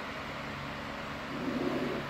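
Steady low background hum with a faint hiss, a room's machine or electrical hum, with a brief faint murmur near the end.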